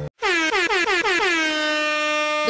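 Air horn sound effect: a rapid string of short blasts sliding down in pitch and settling into one held tone, starting after a split-second gap.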